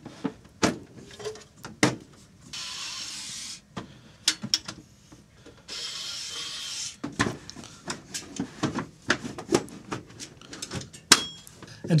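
Clicks and knocks of sheet-steel computer chassis parts and a circuit board being handled and pushed back into place. Two scraping slides of about a second each come a quarter and a half of the way through, and there is a louder knock near the end.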